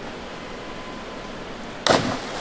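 Steady faint arena hiss, then near the end a sudden short splash: a platform diver entering the pool.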